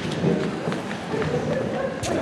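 Footsteps and chairs knocking on a wooden stage floor as people move about, with indistinct voices in the background.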